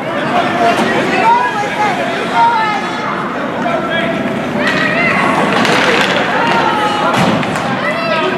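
Indistinct voices of spectators and players calling out during an ice hockey game, over skating and stick noise on the ice, with a few sharp knocks of sticks or puck.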